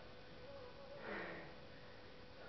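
A person's short, sharp breath about a second in, exhaling hard while pumping dumbbells, over faint room noise.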